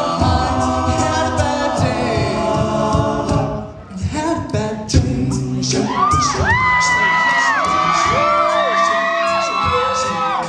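All-male a cappella group singing with a vocal-percussion beat, the sound dropping briefly just before four seconds. From about six seconds several high shrieks and whoops slide up and hold over the singing, audience cheering.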